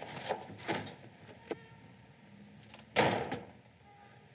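A heavy wooden door slamming shut about three seconds in, after a few lighter knocks.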